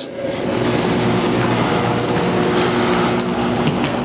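A steady motor-like hum with several low held tones. It sets in about half a second in and runs until just before the end.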